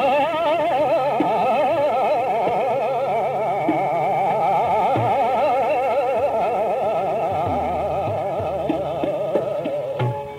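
Hindustani classical khayal singing in Raag Darbari: a male voice holds one long unbroken line with a fast wavering in pitch, over a steady low drone.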